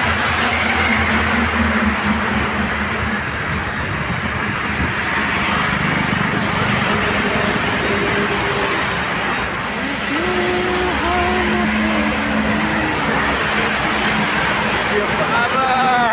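Steady noise of road traffic at a roadside junction, with faint voices in the background.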